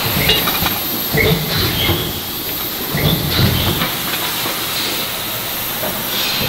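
Forge shop floor noise: a steady hiss and machinery rumble, with scattered metallic clinks and low knocks.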